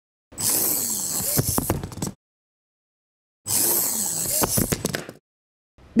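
A micro FPV RC car's tiny electric motor and gears whirring with a hissy whine that dips and rises in pitch as the car drives at a steep foam incline, ending in a few sharp knocks. This happens twice, each run about two seconds long.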